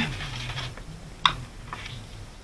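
Hands handling and smoothing a sheet of scrapbook paper on a cutting mat: soft paper rubbing, with one sharp click a little over a second in and a fainter click near the end.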